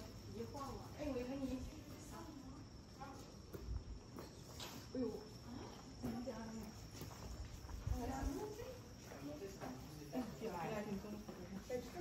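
Insects trilling steadily at a high pitch, with scattered voices of people talking at some distance.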